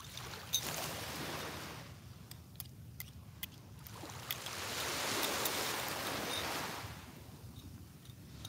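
Small waves washing onto a sandy shore, swelling twice. A few light metallic clicks come from a belt buckle being fastened.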